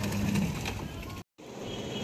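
Outdoor background noise with a low steady hum that fades out within the first half-second, then a brief dropout to total silence at an edit, after which the background noise returns.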